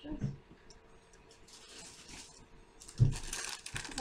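Soft rustling as paintbrushes are fetched, a single thump about three seconds in, then the crinkle of a plastic paintbrush package being handled.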